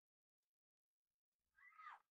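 Near silence; near the end, a faint, short pitched sound that falls in pitch.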